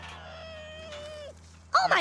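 One long wail held at a fairly steady pitch for just over a second, then a loud shouting voice breaks in near the end.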